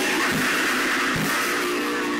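Band playing heavy metal live: distorted electric guitar over a drum kit, with two drum hits, then a guitar chord left ringing through the second half.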